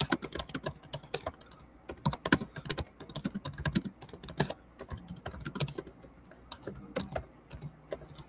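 Typing on a computer keyboard: a quick, irregular run of key clicks with a few brief pauses.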